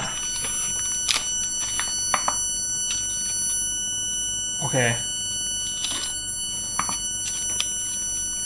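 Light clicks and small knocks of fingers handling a glass LCD panel backed with an aluminium foil sticker against a plastic device frame, a few scattered taps. Underneath, a steady thin high-pitched whine and a low hum.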